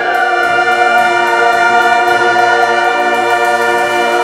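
High school choir singing with a concert band, entering on a loud chord and holding it as one long sustained note.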